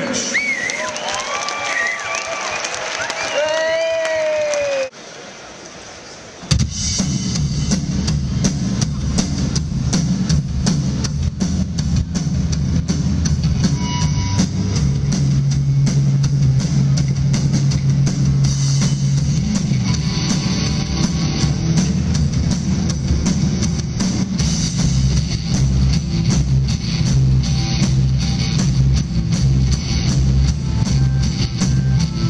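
Audience cheering and whooping for about five seconds. After a short lull, a live rock band starts up loud in the hall, with a drum kit driving a steady beat under guitar and a sustained low note.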